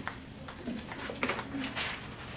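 Faint, low murmuring voices in a quiet small room, with a few soft clicks and a short hiss near the end.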